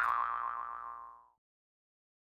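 Closing cartoon sound effect: a quick rising pitched note that holds and fades away over about a second, then silence.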